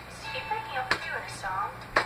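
Quiet talking voices over faint music, with two sharp taps, one about a second in and one at the very end.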